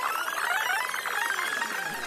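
Electronic synthesizer sound effect: a dense wash of many tones gliding up and down at once, easing off slightly toward the end.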